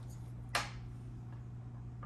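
A single sharp click about half a second in, over a steady low hum.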